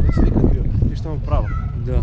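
A young child's high-pitched voice calling out twice, the pitch swooping, over steady wind buffeting the microphone.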